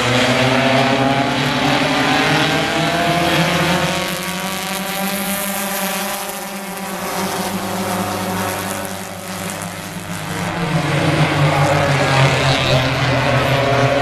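A pack of four-cylinder stock cars racing on an oval at full throttle, many engines revving together. The engine noise falls away in the middle and swells loud again near the end.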